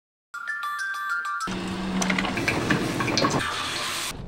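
A moment of silence, then a short high chiming melody, then water spraying and splashing hard onto a belt, like a shower jet, with music underneath.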